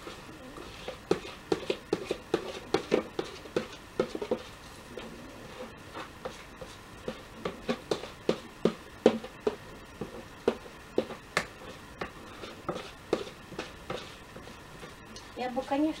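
An irregular series of short knocks and taps on a plastic bowl held upside down over a basin, as risen yeast dough sponge is knocked and scraped out of it.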